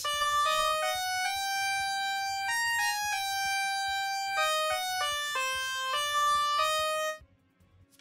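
Electronic synthesized tone playing a short melody of about a dozen dead-flat held notes that jump abruptly from pitch to pitch. It stops about seven seconds in. The notes are locked flat with hard steps between them, the pattern of pitch correction.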